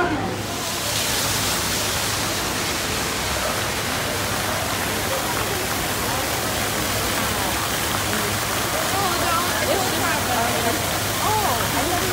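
A fountain jet in a pond splashing with a steady rushing hiss, starting about half a second in, with faint voices of people in the background.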